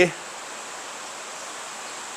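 Steady, even hiss of background noise with no distinct event; the tail of a man's voice ends right at the start.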